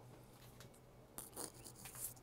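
Near silence with a few faint, brief rubbing and rustling noises, about a second in and again near the end, like handling noise while moving about.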